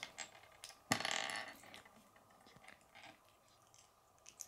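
Small plastic LEGO pieces being handled on a wooden tabletop: scattered light clicks, with a short rattle about a second in.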